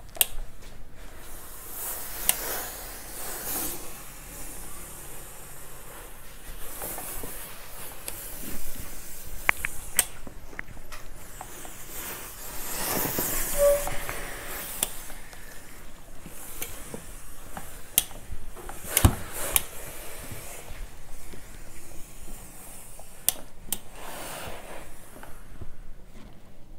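Hose-fed steam iron pressing kurta seams, giving off short bursts of steam hiss, the longest about halfway through. The iron knocks and slides on the cloth, with a few sharp clicks.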